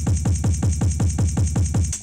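Sampled drum break played back from a Squid Salmple Eurorack sampler, its slices stepped through by a CV sequence, sounding as a fast, even run of drum hits about eight a second with a deep, falling-pitch thump on each.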